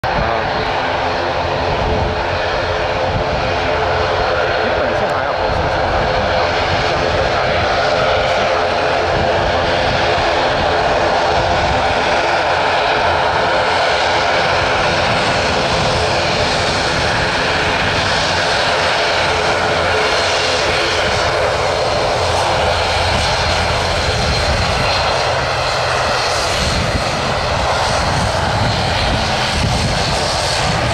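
Twin turboprop engines of an ATR 72 airliner running, a loud, steady propeller drone with no marked rise or fall.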